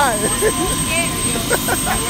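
People talking over the steady high whine and low rumble of a helicopter turbine running nearby.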